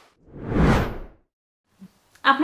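Whoosh transition sound effect: one noisy swish of about a second that sweeps up in pitch, then cuts to silence.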